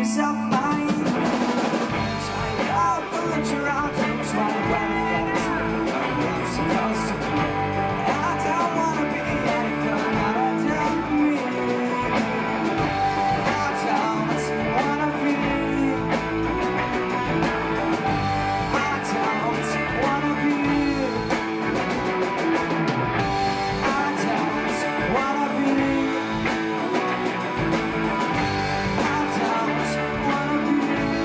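Live rock band playing a song: electric guitars, drum kit and keyboard, with sung vocals over them.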